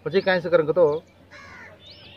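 A bird gives one short call about a second and a half in, after a stretch of a man talking.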